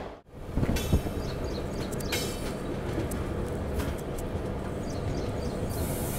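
Passenger train rolling out on the rails, heard at an open coach doorway: a steady rumble of wheels on track, with a couple of thumps about a second in and scattered clicks. The sound cuts out for a moment right at the start.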